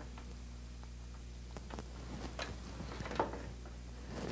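Faint clicks and rustling of an electrical cord being handled and plugged in, over a steady low hum.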